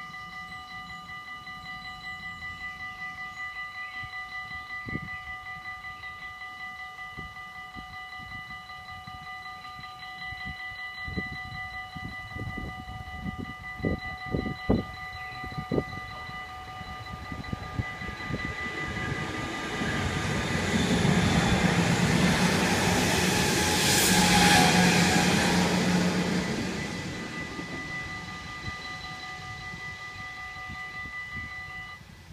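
Level-crossing bells ringing steadily while a DM '90 diesel multiple unit passes. A run of sharp knocks comes about halfway through, then the train's rumble swells, is loudest about three-quarters of the way in, and fades away.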